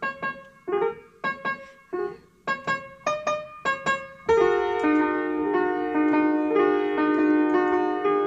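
Yamaha piano being played by hand, an improvisation on a well-known tune. It begins with short, separated notes and chords, then about four seconds in breaks into fuller, connected chords that keep going.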